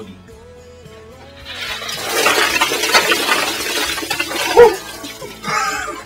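A bucket of ice water is dumped over a person's head and splashes down onto him and the ground for about three seconds, starting about a second and a half in. A loud short shout follows about four and a half seconds in, then laughter near the end.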